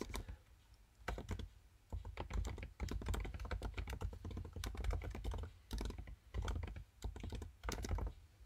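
Typing on a computer keyboard: quick runs of key clicks with brief pauses between them.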